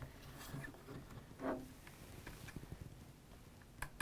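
Faint handling sounds of an air rifle being felt over by hand: light rubbing and scattered small clicks and taps on the stock, with a sharper click just before the end.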